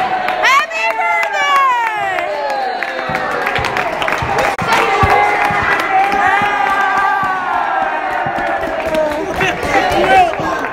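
A crowd of young people shouting and cheering over one another, several voices at once, loudest in the first couple of seconds.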